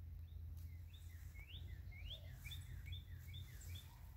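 A small songbird singing faintly, a run of short rising chirps about three a second, over a steady low outdoor background rumble.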